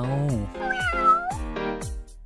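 A short meow-like call that falls and then rises in pitch, starting about half a second in, over background music as a spoken sentence trails off.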